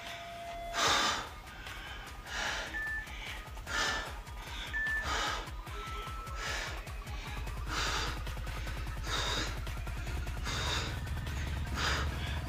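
A woman breathing hard during a floor exercise, with a sharp exhale about every second and a half. Faint background music with a low beat plays under it.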